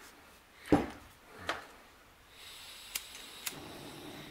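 A one-pound propane bottle with a camp stove on top is set down on a workbench with a sharp knock about a second in, then a lighter knock. A faint steady hiss starts about halfway, and two light clicks come near the end.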